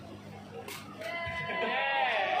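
A person's voice letting out a long, wavering cry, starting about a second in and growing louder.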